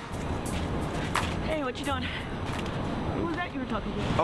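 City street sound: the steady low noise of passing traffic, with brief snatches of voices talking twice and a few sharp clicks.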